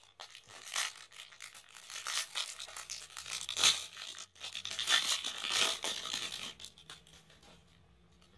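Foil wrapper of a Panini Prizm trading-card pack crinkling and being torn open by hand, with many small crackles, loudest about halfway through and again a second or two later before dying down near the end.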